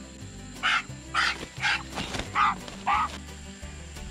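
Domestic goose honking in short, loud calls, five times in about two and a half seconds, as it is held by the body and flaps its wings, over background music.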